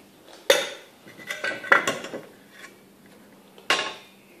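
Metal parts of a tracking gauge clinking and knocking as they are handled and set down on a workbench. There is a sharp clank about half a second in, a run of lighter clinks around the middle, and another clank near the end.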